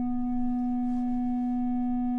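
Film-score drone: a steady low held note with fainter higher tones above it, unchanging throughout.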